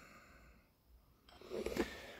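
Near silence, with a faint short sound about one and a half seconds in.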